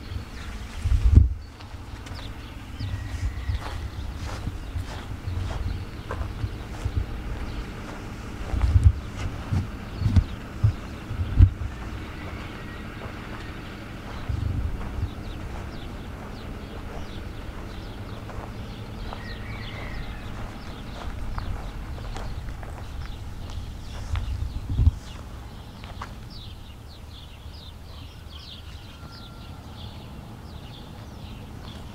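Footsteps of someone walking over grass and dirt, with wind gusting on the microphone in a deep rumble and several heavy thumps, the loudest about a second in and a few around the middle.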